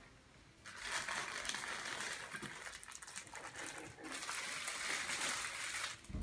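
Plastic packaging crinkling as it is handled, in two stretches with a short break about three seconds in.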